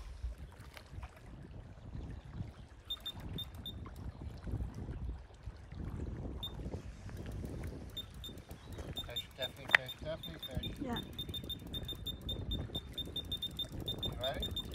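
Wind rumbling on the microphone and small waves lapping on a rocky lake shore, with faint short high-pitched ticks repeating irregularly from a few seconds in and one sharp click near the end.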